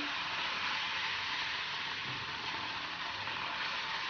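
Steady sizzling hiss as cold milk is poured onto semolina roasted in ghee in a hot brass pan and stirred with a wooden spoon.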